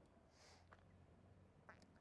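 Near silence: faint outdoor room tone with a soft hiss about half a second in.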